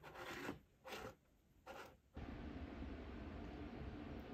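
Three short scrapes as a ceramic beer stein holding pens is handled on a wooden tabletop. About two seconds in they give way to a steady, faint low background hum.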